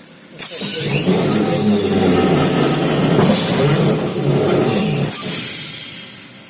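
Electric screw press running through a cycle, its gear-ringed flywheel driven by pinions. It starts abruptly about half a second in with a clunk, runs loudly with a wavering mechanical hum for about four and a half seconds, then stops with a knock and dies away.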